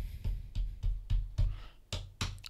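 Desk being tapped repeatedly, heard as a run of short, dull, deep thumps, about three or four a second. The sound carries through the mic stand resting on the desk into a Maono PD200X dynamic microphone.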